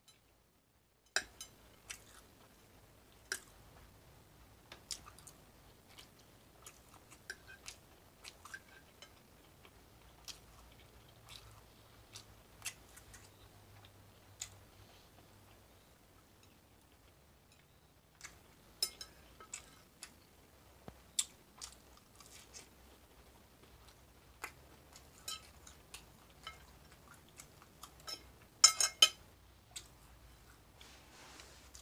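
Close-up chewing with scattered sharp clicks of a fork on a ceramic plate, ending in a quick run of loud clicks.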